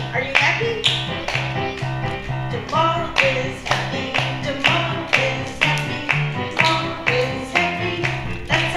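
Electronic keyboard music with a quick, even beat and a repeating bass note, with a voice singing a melody over it.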